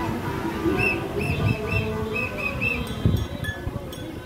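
Street noise from a passing car-caravan protest, with cars driving by. About a second in comes a quick run of about seven short, high chirping notes, and there are a few sharp clicks near the end.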